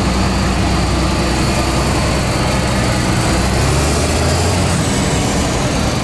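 MAN curtainsider truck's diesel engine running as the truck drives slowly past, with tyre and traffic noise over it. The low engine note changes about halfway through.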